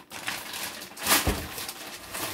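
Plastic bag rustling as a wrapped beef roast is moved, with a thump a little after a second in as it is set down.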